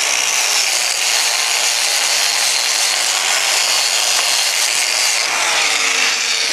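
Angle grinder with a knotted wire wheel running steadily against a steel fillet weld, a constant motor whine over a harsh scrubbing hiss, brushing slag and spatter off a fresh 7018 stick weld.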